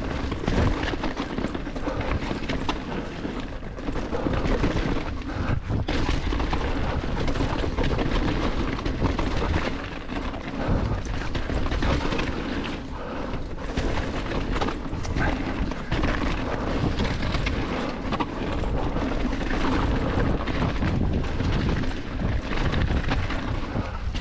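Chromag Rootdown hardtail mountain bike rolling fast down a rocky dirt trail: continuous tyre rumble on dirt and stones, with the rigid rear end, chain and frame clattering over roots and rocks, and wind buffeting the action-camera microphone.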